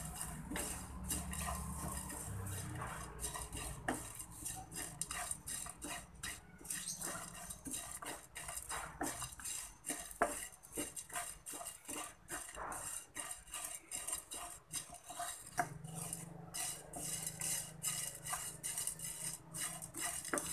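Wooden spatula stirring and scraping rice grains with pieces of kencur and turmeric around a dry non-stick frying pan as they are dry-roasted: irregular scrapes and light rattles of the grains, sparser for a few seconds in the middle.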